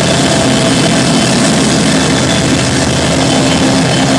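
Live heavy rock band playing loud: distorted electric guitar and bass in a dense, steady wall of sound.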